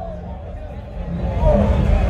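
Dub sound system starting a tune: heavy bass comes in about a second in and the music grows louder, over crowd chatter.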